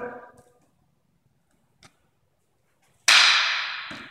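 Wooden fencing canes striking together once, a loud sharp clack about three seconds in that trails off in the room's echo, with a faint tap before it.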